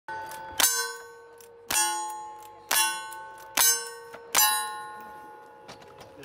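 Revolver firing five shots about a second apart at steel plate targets, each shot followed by the ringing clang of a hit steel plate that slowly fades.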